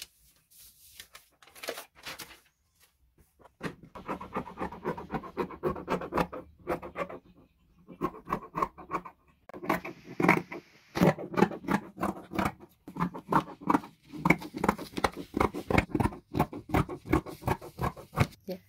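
Scissors cutting fabric: a quick run of short snips and scrapes. It is faint at first, then steady from about four seconds in, with a few brief pauses.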